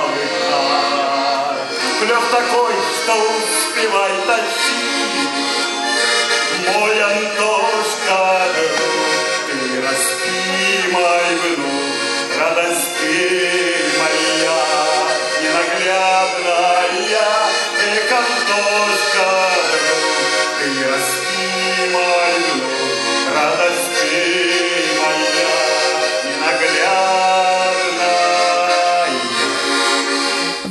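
A bayan (Russian button accordion) plays a folk tune while a man sings along with it.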